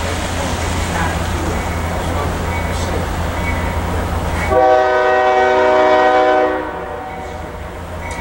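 A steady low rumble, then about halfway in a locomotive horn sounds one long blast of about two seconds, several tones at once, from an approaching train.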